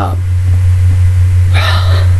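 A man's sharp breath in about one and a half seconds in, over a loud, steady low electrical hum.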